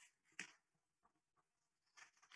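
Near silence: room tone, with one brief faint noise about half a second in.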